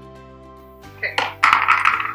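Soft background music of sustained chords, with a woman's voice coming in about a second in and speaking over it.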